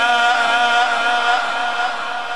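A male Quran reciter's voice holding one long steady note at the end of a melodic recitation phrase, fading out near the end.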